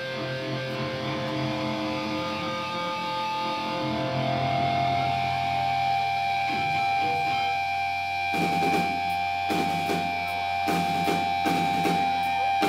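Electric guitar notes held and ringing through the amplifiers, shifting to a new held note about four seconds in. From about eight seconds in, heavy hits come roughly once a second.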